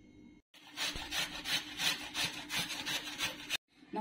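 A raw beetroot being grated on a hand grater: a run of rhythmic rasping strokes, about four a second, that starts about half a second in and stops abruptly near the end.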